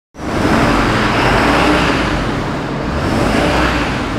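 Ford F650 Supertruck's 6.7-litre Power Stroke V8 turbo diesel running: a loud, steady rushing noise over a low rumble, cutting in suddenly at the start.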